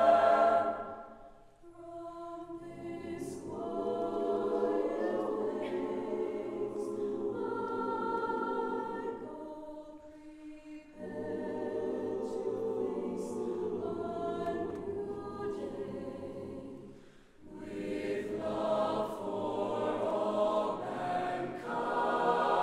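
Mixed choir singing a cappella in a stone church: soft, sustained chords in phrases, with three brief pauses where the sound dies away into the church's echo before the voices come in again.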